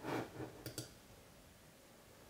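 A computer mouse clicking twice in quick succession, soft and close together, as a link on the screen is opened.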